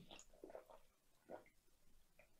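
Faint sips and swallows of a man drinking from a can, a few soft short sounds with the clearest about a second in.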